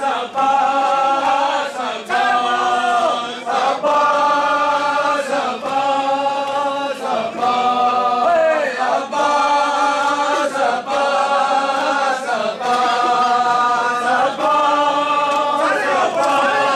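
Group of men chanting a nauha (Shia mourning lament) together in repeated sung phrases, with hand blows on bare chests (matam) falling in time at the breaks between phrases, about one every one and a half to two seconds.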